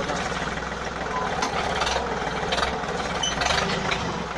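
Yanmar 1145 tractor's diesel engine running steadily, with a few sharp knocks and clanks over it through the middle.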